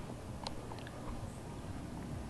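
Faint handling noise from a handheld camera being moved: a few soft clicks and rustles over a low room hum.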